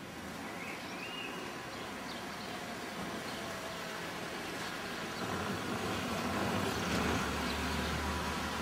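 New-generation Dacia Sandero hatchback driving up and past, its engine and tyre noise growing steadily louder as it approaches.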